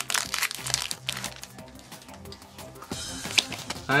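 Foil booster-pack wrapper crinkling and tearing as the pack is pulled open and the cards slid out, over background music.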